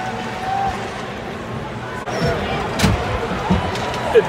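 Ice hockey arena din heard from rinkside, with indistinct crowd voices and shouts over a steady background. There is one sharp knock a little under three seconds in.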